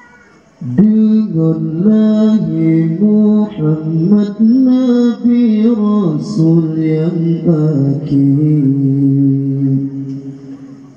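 A solo male voice singing an Acehnese qasidah into a microphone, coming in about half a second in with long held notes that bend through melismatic turns.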